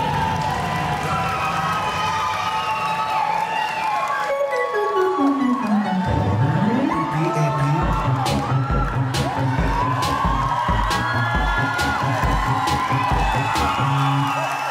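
Dance music mix played loud over a PA for a routine, with an audience cheering and whooping over it. About four seconds in, the track gives way to a falling-then-rising pitch sweep, and a new track with a steady beat of about two kicks a second comes in near the six-second mark: a cut between songs in a dance medley.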